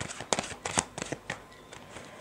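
A deck of playing cards being shuffled by hand: a quick run of crisp card snaps and slaps, thick in the first second and thinning out toward the end.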